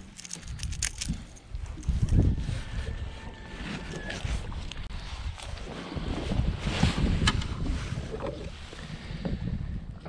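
Wind rumbling unevenly on the microphone, with rustling of a jacket and small handling clicks as a caught bass and its crankbait are handled.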